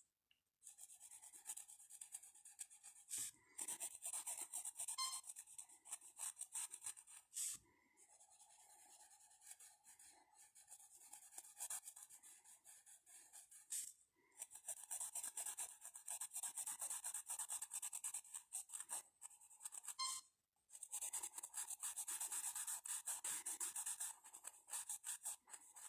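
Pencil scratching on paper in quick back-and-forth shading strokes, in long runs broken by a few brief pauses.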